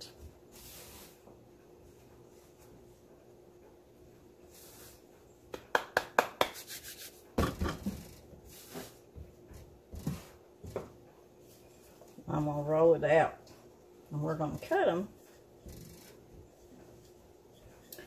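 Hands folding and pressing soft biscuit dough on a floured board, mostly faint, with a quick run of clicks about six seconds in and a dull thump soon after. A woman's voice is heard briefly, twice, past the middle.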